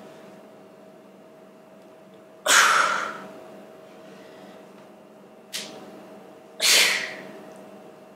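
Three sharp, forceful exhalations by a man straining while posing: two loud, hissing breaths and a shorter one between them, each fading within half a second. A faint steady hum lies underneath.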